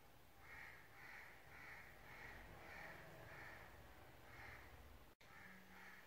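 Faint bird calls: a steady string of short calls, about two a second.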